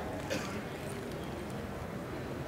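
Lecture-hall room tone: a steady low hiss and hum, with one faint tap about a third of a second in.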